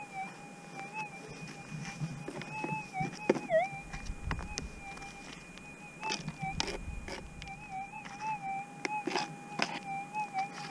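Metal detector's steady threshold tone, a pair of high tones with slight wobbles, dipping briefly in pitch about three and a half seconds in as it picks up a small target. Scattered knocks and scrapes of soil and stones being worked over by hand run through it.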